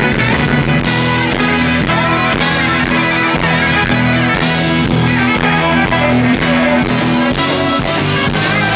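Live rock band playing an instrumental passage: electric guitars and bass over a steady beat, with saxophone and trumpet on stage, loud and continuous.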